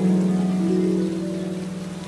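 Slow harp music: a low note and a chord struck at the start ring on and fade away over the two seconds.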